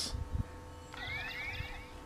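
A Power Rangers Mystic Force DX Mystic Morpher toy flip phone: soft knocks as a keypad button is pressed, then about a second in, its small built-in speaker plays a very quiet electronic sound effect of quick rising chirps lasting about a second.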